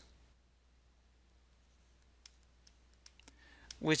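Near silence with a few faint, scattered ticks of a stylus tapping a tablet screen while handwriting, in the second half. A voice starts speaking just before the end.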